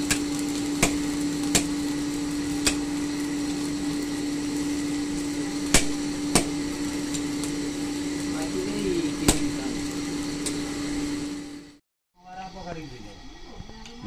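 Forge blower running with a steady motor hum, forcing air into a blacksmith's forge fire, with irregular sharp knocks of metal tools about every second or two. The blower cuts off suddenly about 12 seconds in, leaving faint voices.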